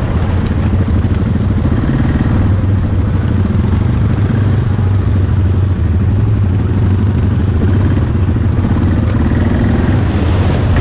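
Yamaha Grizzly 700 ATV's single-cylinder four-stroke engine running steadily at low speed, heard close from the rider's seat.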